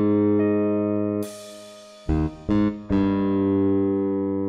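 Computer-rendered bass guitar from notation-software playback playing a slow bass line at half speed: a held note, a drop-off just over a second in, two short notes about two seconds in, then another held note.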